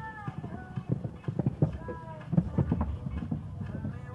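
Hoofbeats of a KWPN mare cantering on a sand show-jumping arena, an uneven run of dull strikes with a few heavier ones near the middle, over a faint distant voice.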